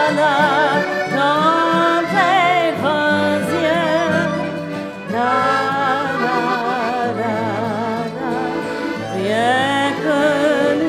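Live cabaret music: a woman's voice singing wordless, sustained lines with wide vibrato, accompanied by violin and accordion.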